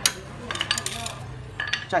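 A sharp metal tap right at the start, then a few light metallic clinks of small steel parts being handled.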